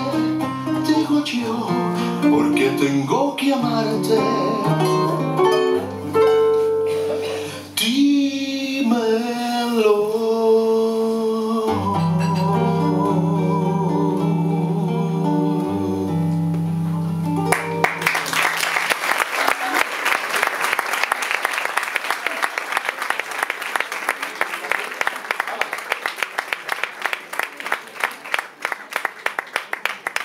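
Two nylon-string classical guitars playing the closing bars of a bolero, with a male voice holding a wavering sung note about eight to ten seconds in. The music ends about eighteen seconds in and audience applause follows, slowly fading.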